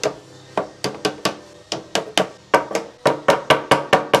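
Plastic lead dresser beating a sheet of lead on a timber bench to bend a flashing piece round: repeated sharp blows, a few spaced ones at first, then a rapid run of about six a second in the last second and a half.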